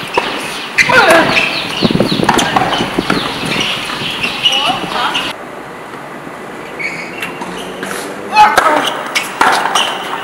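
People talking, mixed with a few sharp knocks of a tennis ball being struck by a racket or bouncing on a hard court.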